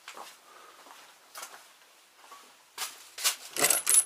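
A few faint steps on the porch floor, then from about three seconds in a quick run of sharp metallic clicks and rattles as a padlocked church door's latch is tried and does not open.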